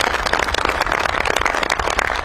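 A crowd of soldiers applauding: dense, steady clapping, loud against the speech around it.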